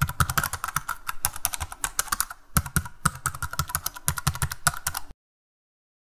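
Computer keyboard typing sound effect: a fast run of key clicks with a short pause about two and a half seconds in, cutting off suddenly about five seconds in.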